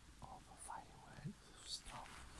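A person whispering faintly, in a few short, broken bits.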